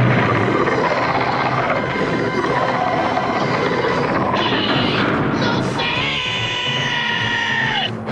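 Cartoon soundtrack: a loud rumbling, crashing ground-shaking effect under music for about six seconds. It gives way to a long held, pitched cry that drops in pitch at the very end.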